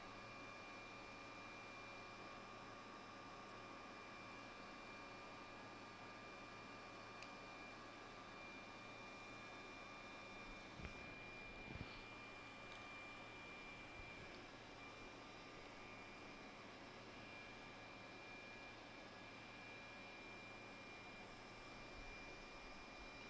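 Near silence: a faint steady hiss with a thin high tone, and two or three faint short knocks around the middle.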